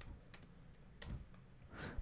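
Faint keystrokes on a computer keyboard: a handful of scattered, uneven taps as a short word is typed.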